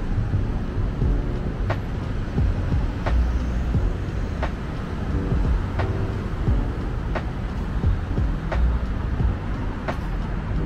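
Steady low rumble of city road traffic, with a soft regular beat of background music ticking about every second and a half and a few short held notes midway.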